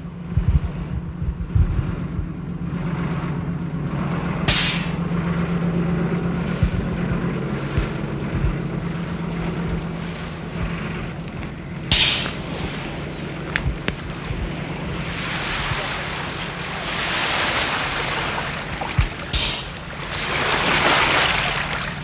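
Outdoor shoreline sound: wind buffeting the microphone and water washing at the edge, with a steady low hum through roughly the first third. Three short sharp crackles come about a third of the way in, midway and near the end.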